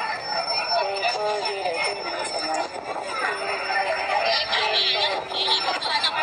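Several people's voices, talking and chanting in short held tones, played back through a phone's speaker.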